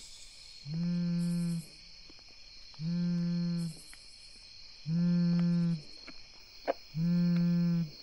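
A low buzzing tone with a steady pitch, about a second long, repeating about every two seconds, over the steady chirring of night crickets.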